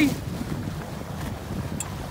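Wind buffeting the microphone over the wash of choppy water, a steady low rush.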